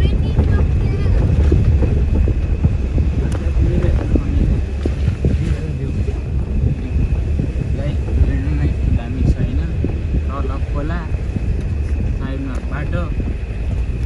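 A vehicle driving on a rough unpaved gravel road, heard from inside the cabin: a steady low road and engine rumble with frequent small knocks and rattles from the bumps, and wind buffeting the microphone at the open window.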